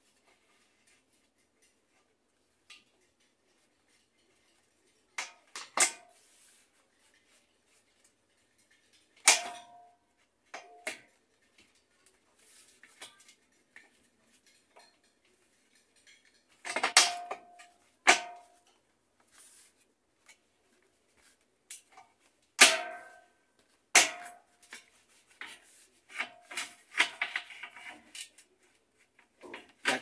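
Scattered sharp knocks and clicks, each with a brief ring, as a rim ring is pressed and fitted onto the top edge of a porcelain-enamel washing-machine basket; a stretch of handling rustle near the end.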